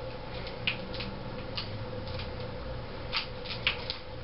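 Quiet room tone: a steady low hum with a few faint, scattered clicks.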